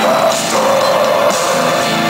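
A doom metal band playing live: distorted electric guitars holding sustained notes over drums and cymbals.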